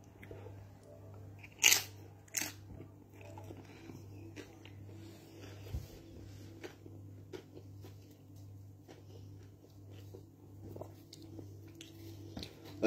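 A man chewing a mouthful of chicken curry, with faint wet mouth clicks throughout and two sharper clicks about two seconds in.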